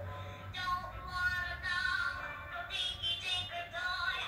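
Singing plush hippo toy playing a recorded song with music through its small built-in speaker, the voice thin and high.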